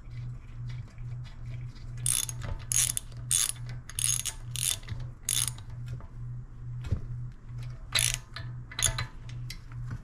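Socket ratchet wrench clicking in short strokes as a spark plug is screwed back into a Honda GCV190 engine's cylinder head: a run of about six strokes about two seconds in, then two more near the end.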